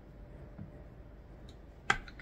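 Quiet room tone with faint handling noise and one faint click about one and a half seconds in. A spoken word begins right at the end.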